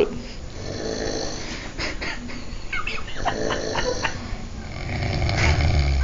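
A man snoring while asleep: two long, rough snores, the second and louder one near the end.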